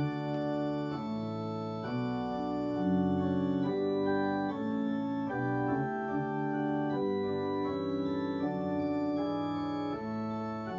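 Kawai CN37 digital piano played on its organ voice: sustained organ chords in a moving progression, starting abruptly and changing about every half second to a second, some held notes wavering slightly.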